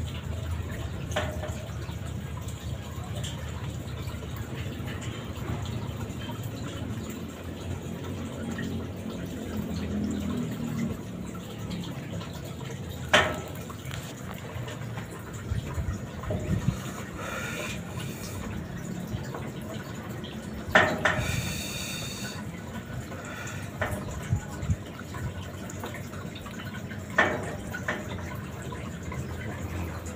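Aquarium top filter returning water into the tank: a steady trickle and splash of falling water. Three short, sharp knocks or splashes break through it, spread across the stretch.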